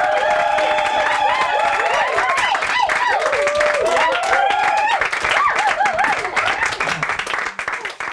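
Audience applauding and cheering, with many whoops over dense clapping. The applause thins and fades out near the end.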